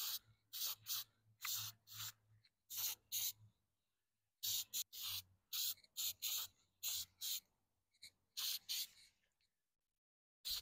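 Aerosol can of spray-on texture coating hissing in many short spurts, two or three a second, with a pause about four seconds in and the last spurts near nine seconds.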